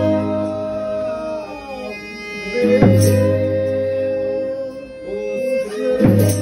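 Folia de Reis ensemble playing a slow greeting song: a bowed violin and strummed violas under long held notes. A sharp loud strike falls about every three seconds: near the start, about halfway and at the end.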